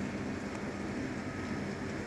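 Steady rain falling over a container yard, an even hiss mixed with a low, steady mechanical hum.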